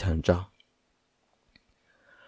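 A narrator's voice for the first half second, then a pause of near silence with two faint clicks.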